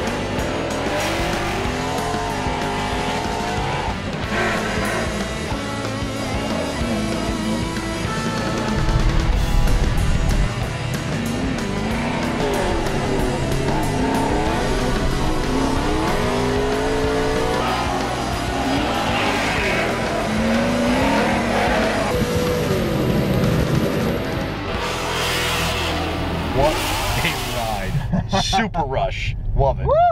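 Ford Mustang RTR drift car's engine revving up and down again and again through a drift run on a wet track, with tyre and spray noise. Music plays underneath.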